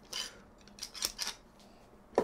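A small metal screw clamp handled with a chisel, giving a few faint metallic clicks and rattles, near the start and again around a second in.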